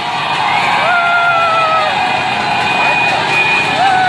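Din of a street crowd riding motorbikes: steady engine and traffic noise under cheering. Over it, long held shouts come about a second in and again near the end.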